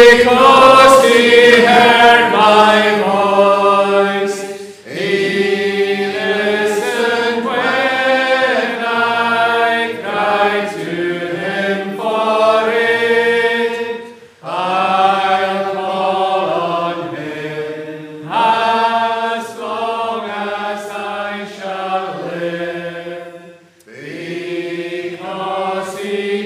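Congregation singing a metrical psalm unaccompanied, in slow, drawn-out lines with a brief pause between each line.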